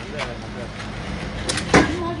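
Two sharp knocks a quarter of a second apart, about one and a half seconds in, with voices talking around them.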